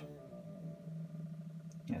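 AutoTrickler V2 powder trickler's motor giving a steady low hum as it trickles the last few tenths of a grain into the scale pan, ramping down toward its 44-grain target.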